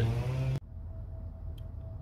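A man's voice holding a word, cut off abruptly about half a second in; then faint background noise, a low rumble with a thin steady hum and a couple of tiny ticks.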